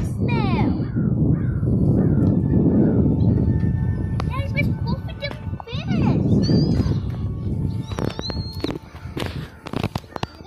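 Children's excited high squeals and calls over a steady low rumble, as a fish is reeled up and swung onto pavement, with a few sharp knocks near the end.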